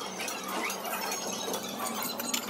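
Knife and fork scraping and clicking against a ceramic plate while food is cut, with many quick small clicks and a few brief squeaks.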